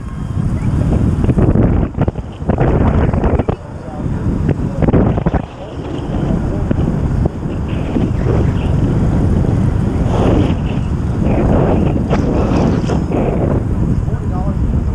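Wind buffeting a bike-mounted camera's microphone at racing speed on a track bicycle: a loud, continuous low rumble that surges and eases several times.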